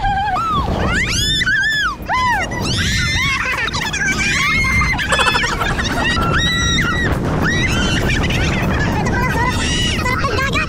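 Several banana-boat riders screaming and shrieking as the boat is towed off, many overlapping cries that swoop up and down, some held high for about a second. Under them runs a steady rush of wind and spray.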